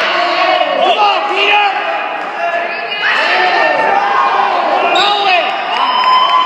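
Several people shouting and yelling over one another in a large gym, with no clear words; short rising-and-falling calls overlap throughout.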